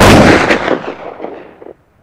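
A single loud blast at the very end of the track, like a gunshot or explosion sound effect, fading away over about a second and a half before cutting off.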